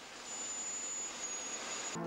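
Steady even hiss with a faint high-pitched whine, cut off suddenly at the end by music: noise from a blank stretch of videotape between edited segments.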